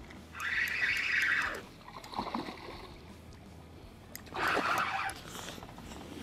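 Two short bursts of water splashing, one just after the start and one about four seconds in, as a hooked crappie thrashes at the surface and is lifted out beside the boat.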